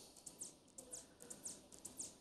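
Near silence: faint room tone with soft, high-pitched ticks repeating throughout.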